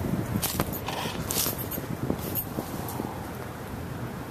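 Dry leaves and twigs crunching and rustling in short irregular spells as someone steps and pushes through leaf-littered scrub, over a steady low background rumble.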